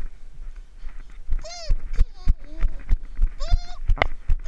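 A small animal crying close to the microphone: two short calls that rise and fall in pitch, about two seconds apart, amid repeated sharp knocks and bumps.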